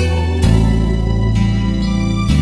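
Instrumental karaoke backing track of a ballad, with sustained chords over a bass that moves to a new note about half a second in; no vocal over it.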